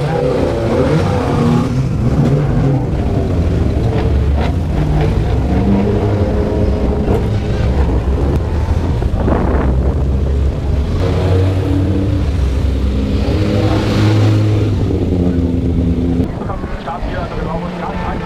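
Engines of several historic touring race cars running loud, idling and being revved so the pitch rises and falls, dropping somewhat in level near the end.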